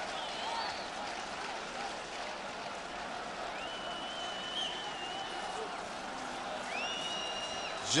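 Steady football stadium crowd noise with a few long whistles over it, one held for about two seconds in the middle and another near the end.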